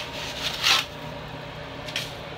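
Sand-mix mortar being scooped by hand from a bucket and pushed in under a bathtub onto the concrete floor: two short gritty scrapes, the second a little over half a second in.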